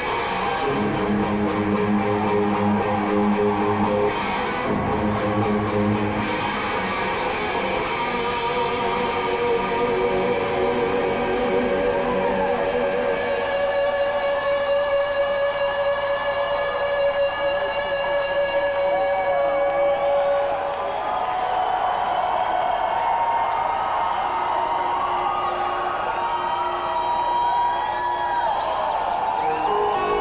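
Electric guitar played solo through a stage amplifier: low chords and notes at first, then long sustained single notes with string bends and vibrato.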